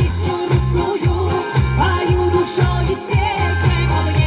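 A woman singing into a microphone over a pop-style backing track with a steady, pulsing bass beat, amplified through a PA speaker.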